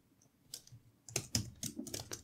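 Typing on a computer keyboard: a short run of separate keystrokes, about half a dozen, starting about half a second in.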